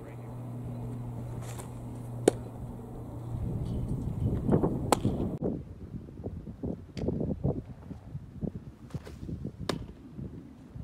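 A baseball pitch smacking into a catcher's leather mitt: one sharp pop about two seconds in, over a low steady hum. After that comes a gusty low rumble with a few lighter clicks.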